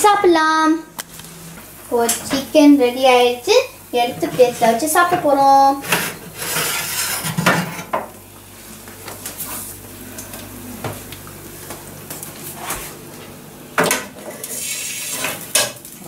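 Metal clatter of an oven door and wire rack as a rack of grilled chicken legs is pulled out of a gas cooker's oven and set on the hob, with a few sharp knocks and stretches of sizzling from the hot chicken. Voices talk over the first few seconds.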